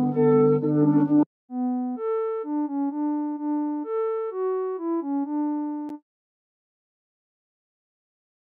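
A short lead melody of single sustained notes is played on a software synthesizer. The first second has a fuller, denser tone with more bass. After a brief gap, the melody continues in a cleaner Vital synth patch built on a few strong harmonics and low-pass filtered. It stops with a click about six seconds in, then silence.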